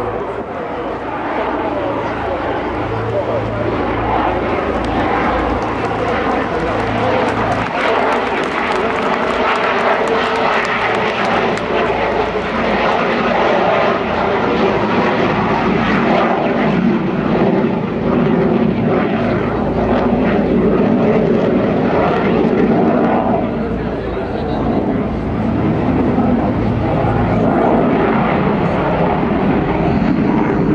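Dassault Rafale twin-engine jet fighter flying a display overhead, its engines loud and steady.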